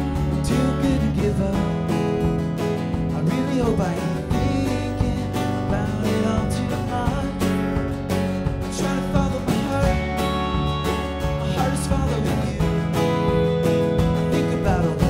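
Live band playing an instrumental break: a Telecaster-style electric guitar plays a lead with bent notes over strummed acoustic guitar, bass guitar and drums.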